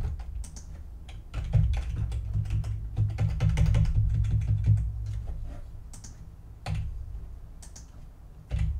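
Typing on a computer keyboard: a dense run of quick, irregular keystrokes, heaviest in the first half, then a few separate key presses near the end.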